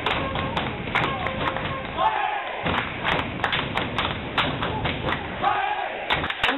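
Small football crowd clapping and shouting after a goal. Irregular sharp claps and thuds run throughout, with short shouts about two seconds in and near the end.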